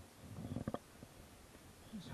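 A climber's heavy breathing close to the microphone while scrambling up granite rock: one low breath about half a second in, ending in a few sharp taps or scuffs, then quiet.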